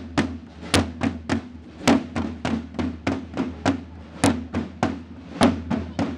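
Side drums played with sticks by marching drummers, beating a steady marching rhythm of about five strokes a second, with a sharper accented stroke roughly every second.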